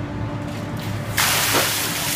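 A large bucket of ice water dumped over a person's head: a sudden loud rushing splash of water starts a little past halfway through and pours down onto him and the concrete.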